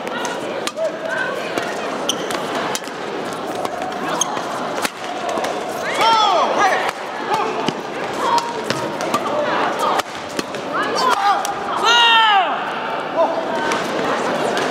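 Badminton rally on an indoor court: sharp racket hits on the shuttlecock come in quick succession, and short high shoe squeaks on the court floor come about six seconds in and again near the end. Steady voices in the hall lie underneath.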